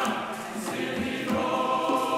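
Background music: a choir singing sustained chords.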